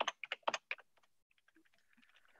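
Computer keyboard typing: about five quick keystrokes in the first second as values are entered into spreadsheet cells.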